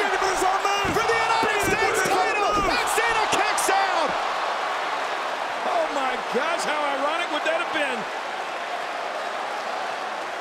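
Arena crowd shouting and cheering during a pin attempt on a wrestling ring, with a few heavy thuds on the ring mat in the first three seconds. The crowd noise eases off after about four seconds.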